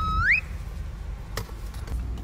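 Steady low hum of an idling car heard from inside the cabin. It opens with a short rising whistle-like tone lasting under half a second, and a single click comes about a second and a half in.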